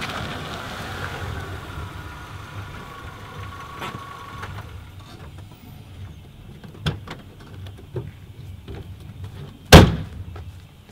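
Mazda hatchback's engine running as the car pulls in and stops, with a sharp click about seven seconds in and a loud car-door slam near the end.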